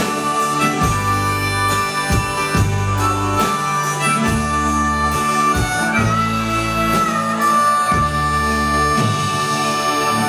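Harmonica played into a vocal microphone over live band backing with drums and bass. It plays a melody of sustained notes, with one long held note a little past halfway that bends up and then drops back.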